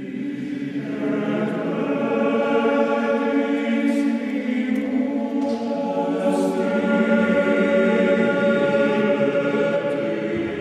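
Background choral music: a choir singing long held notes, the chord changing about a second in and again around six seconds in.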